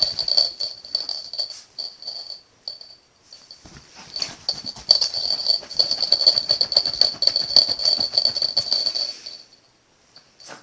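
A small bell on a Yorkshire terrier's collar jingling fast as the dog digs and scrabbles at a padded chair, its claws scratching the fabric. It jingles in short spells for the first few seconds, then runs on without a break for about five seconds and stops near the end.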